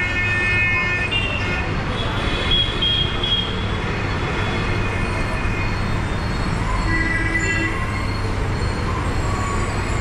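Busy street traffic, with a steady engine hum from buses, auto-rickshaws and motorbikes and vehicle horns sounding again and again. One horn is held through the first second, a few more sound around two to three seconds in, and another comes near seven seconds.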